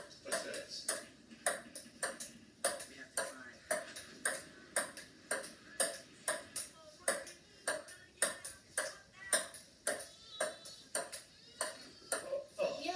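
Table tennis rally on a wooden kitchen table: the ball clicks sharply off the bats and the tabletop about two to three times a second in an unbroken back-and-forth.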